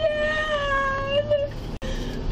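A woman's long, high-pitched wail, held on one drawn-out note that sags slightly in pitch and breaks off about a second and a half in.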